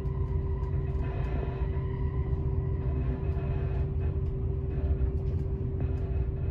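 Inside a moving passenger train carriage: the steady low rumble of the wheels on the rails, with a steady hum over it and occasional light clicks.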